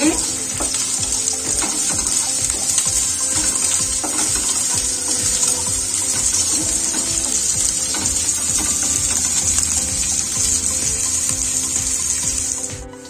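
Sliced onions sizzling steadily in hot oil in a nonstick kadhai, stirred now and then with a wooden spatula, at the stage where they are being roasted toward golden.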